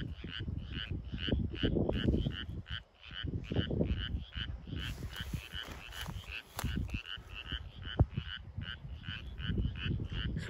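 Frogs croaking in a flooded ditch and pond: an even, rapid run of high calls, about four a second, going on without a break.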